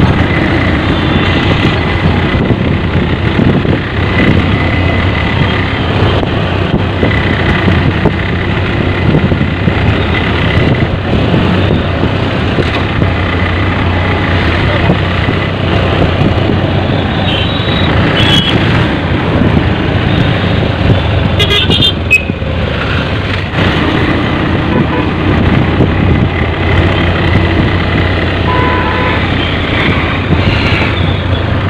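Steady engine and road rumble heard from inside a moving bus, with horns tooting twice in the second half.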